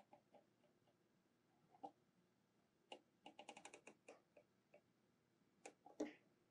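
Faint, light clicking in short bursts, with a run of about ten quick clicks around the middle. It fits the coil power supply's current-control knob being turned step by step as the Helmholtz-coil current is raised.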